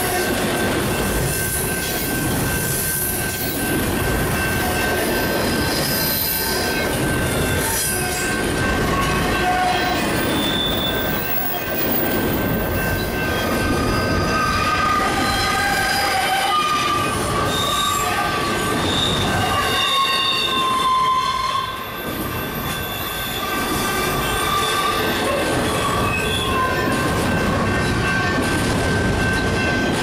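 Double-stack intermodal freight train's well cars rolling past, a steady rumble of steel wheels on rail with wheel flanges squealing in many short high-pitched tones. The last car clears near the end.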